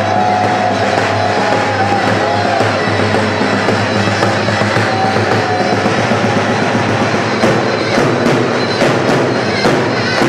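Zurna and davul playing a halay dance tune: the shawm's loud reedy melody over the big bass drum's beats, the drum strokes standing out more sharply in the second half.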